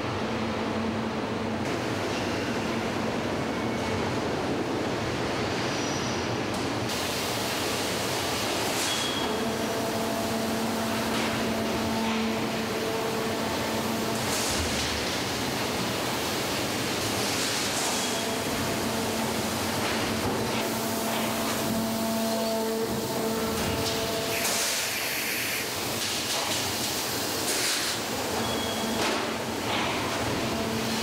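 Steady car-factory machinery noise: a continuous hiss with low hums that come and go every few seconds.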